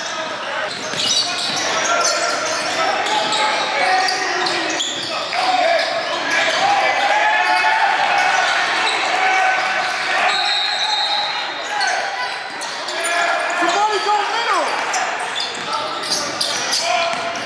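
Live game sound of basketball being played: a ball dribbling on the hardwood floor, with indistinct voices of players and spectators in the gym.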